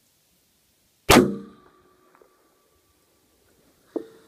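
A single .300 WSM rifle shot about a second in, sudden and loud, with a faint steady ringing tone trailing off over the next two and a half seconds. Near the end comes a much fainter, sharp clang, the bullet's hit on the AR500 steel plate at 700 yards carrying back.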